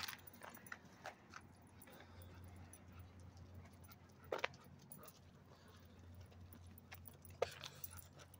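Faint dog barking, two short barks about four and a half and seven and a half seconds in, over a low steady hum and a few faint clicks.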